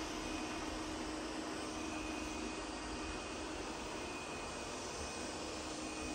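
Roborock S8 MaxV Ultra robot vacuum running: a steady hum from its suction fan, with a low steady tone and a faint higher whine.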